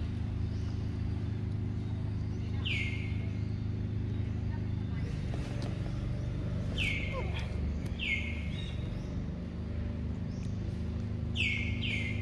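A bird gives short, clear calls that slide down in pitch, about five times, the last two in a quick pair near the end, over a steady low hum.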